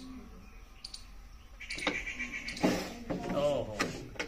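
Indistinct talk from onlookers in the second half, with a few sharp knocks in between.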